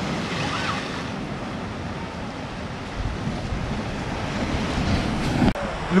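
Ocean surf: waves breaking and washing in steadily, with wind rushing over the microphone.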